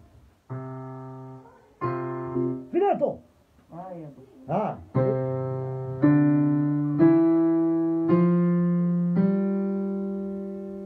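Digital piano played slowly. Two held chords come in the first two seconds. From about five seconds in, a chord is struck about once a second, each a step higher than the last and left ringing as it fades.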